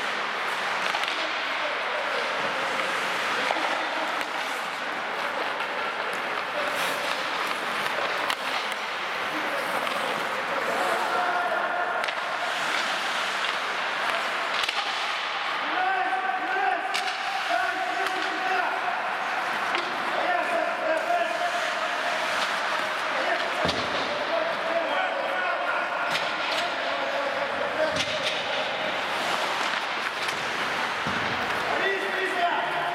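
Ice hockey play on an indoor rink: skate blades scraping the ice, sticks and puck clacking, and sharp knocks of the puck or players hitting the boards, with players shouting to each other.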